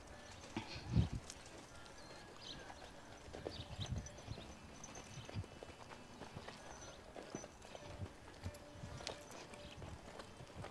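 A horse's hooves thudding softly and unevenly on arena sand at a walk, the strongest footfall about a second in.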